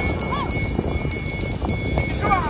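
Busy crowd noise and wind rumble on the microphone beside a cycling track, with many short clicks running through it. A steady high-pitched whine sits on top, and two short rising-and-falling tones come near the start.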